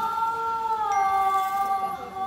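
A woman's voice holding one long wordless sung note, its pitch dipping slightly about a second in, as part of the show's soundtrack music.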